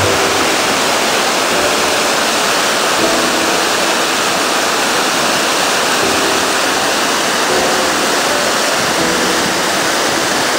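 River water rushing through an open sluice gate and churning into white water below it, loud and steady.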